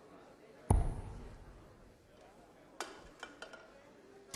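A steel-tip dart striking a Winmau bristle dartboard once, about a second in: a single sharp thud that dies away. A few faint clicks follow near the end.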